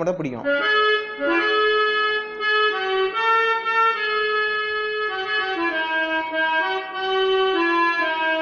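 Electronic keyboard playing a slow single-line melody, one sustained note at a time, each note held until the next begins.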